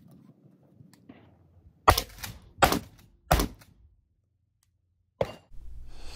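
Three shotgun shots fired in quick succession at a steel target, about 0.7 s apart, starting about two seconds in. A shorter, quieter click follows near the end.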